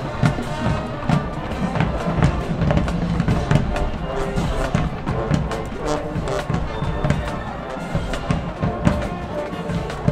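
High school marching band playing: trumpets and other brass over a drumline of bass drums, snares and cymbals, with frequent drum hits.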